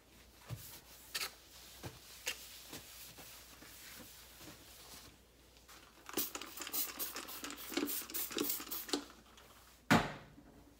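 A spray bottle spraying cleaner onto a glass-ceramic stovetop in a quick run of about a dozen squirts, roughly four a second, after a few scattered soft clicks. A single sharp knock near the end is the loudest sound.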